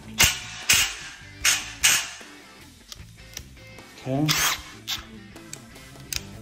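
Bosch Freak GDX 18V-1800C cordless impact driver, with a socket on its half-inch square drive, run on a bolt in four short bursts within the first two seconds.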